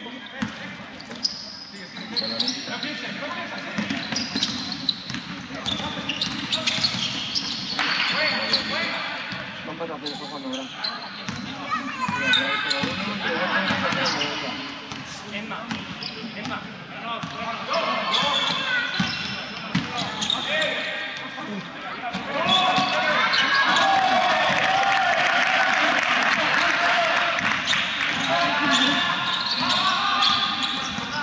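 Basketball bouncing on an indoor sports-hall court during play, mixed with indistinct shouting from players and spectators that grows louder in the last third.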